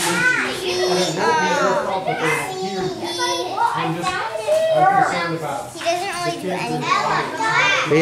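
Children's voices talking, with no other sound standing out.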